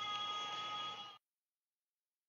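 Faint steady background hiss with a few thin high whining tones, which cuts off abruptly to dead silence just over a second in.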